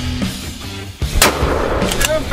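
Intro music with a steady heavy beat, and a single loud gunshot a little over a second in, with a trailing echo.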